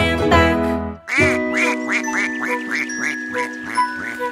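The sung music closes its phrase about a second in. Then a quick run of about a dozen cartoon duck quacks, some four a second, plays over a sustained backing chord.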